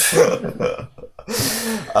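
Men's voices laughing and murmuring in conversation, in two short stretches with a brief pause about a second in.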